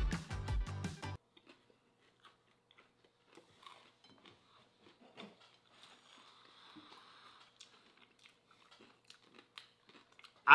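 Music cuts off abruptly about a second in; after that, faint chewing with soft crunches and small mouth clicks as people eat mofongo, balls of mashed fried plantain with pork rinds.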